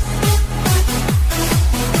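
Hands-up techno dance track: a four-on-the-floor kick drum about twice a second, with a bass line between the kicks and hi-hats on top.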